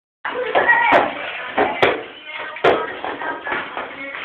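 Voices talking in a small room, broken by three sharp knocks or smacks spaced a little under a second apart.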